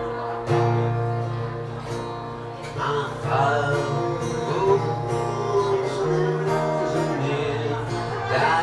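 Acoustic guitar strummed in a bluegrass-style accompaniment, with a man's voice singing the melody from about three seconds in.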